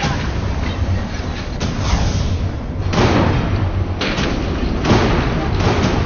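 A series of heavy booms, about one every second, over a steady low rumble.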